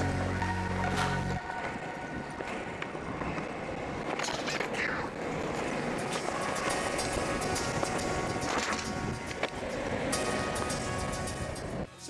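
Longboard wheels rolling on asphalt, a steady rumbling hiss, mixed with background music whose deep bass drops out about a second in; a few short knocks come through along the way.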